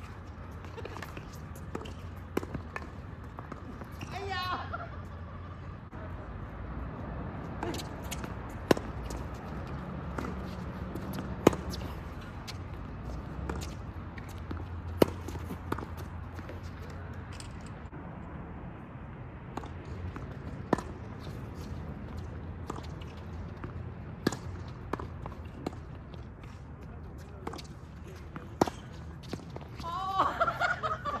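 Tennis balls struck by racquets and bouncing on a hard court: sharp single pops every few seconds over a steady low background hum.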